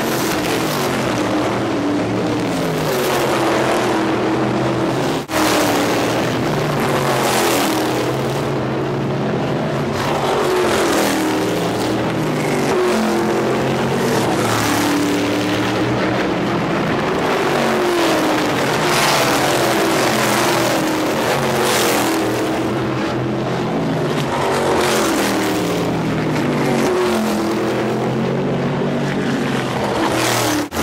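Supermodified race cars' V8 engines running hard at racing speed, their pitch rising and falling as cars pass close by again and again, with a brief dropout about five seconds in.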